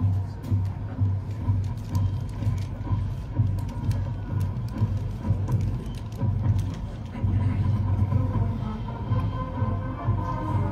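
College marching band playing on the field, with bass drums beating about twice a second and sharp percussion hits on the beats.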